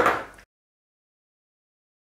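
The tail of a spoken word, then total digital silence: the sound track drops out completely.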